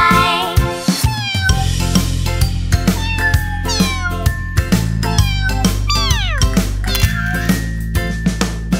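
A string of cartoon kitten meows, each a falling cry, the longest about six seconds in, over an instrumental children's music track with a steady bass and beat.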